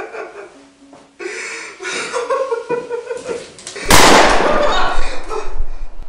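Wordless vocal sounds from a voice, then, about four seconds in, a very loud cry that lasts over a second and is loud enough to distort.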